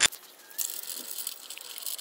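Faint, light metallic rattling and clinking of an antenna mounting bracket and its long bolts being handled at a mast pole.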